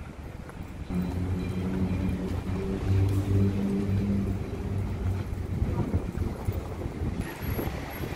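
Street traffic: a motor vehicle's engine running with a low, steady hum for a few seconds, then fading out. Wind rumbles on the microphone.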